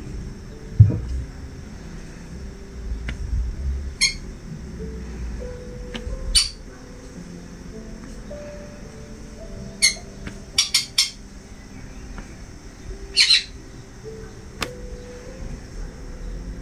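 About seven short, sharp high-pitched chirps or squeaks, three of them in quick succession about halfway through, over quiet background music. A single low thump about a second in.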